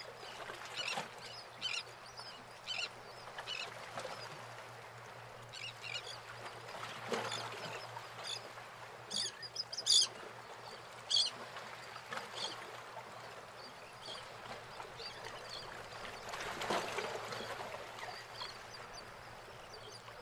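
Birds giving short squawking calls, one every second or so and more often in the first half, over faint outdoor background noise with a steady low hum.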